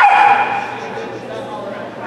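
A dog barks once, loud and sudden, right at the start, the sound dying away over about half a second.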